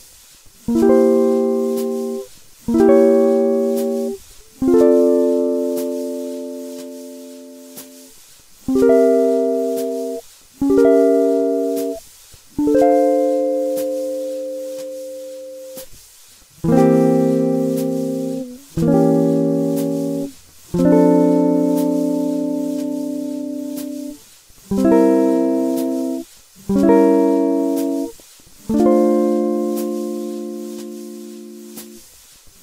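Solo guitar playing a jazz perfect-cadence exercise: C7 and C-sharp diminished (standing in for C7♭9) two beats each, resolving to F6 for four beats. Each chord is struck once and left to ring, about a second apart per beat, and the three-chord figure goes round four times.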